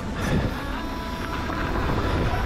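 Hardtail mountain bike rolling fast over a gravel forest trail: a steady rumble of tyres on dirt and wind on the camera microphone, with a louder clatter from a bump about a quarter of a second in.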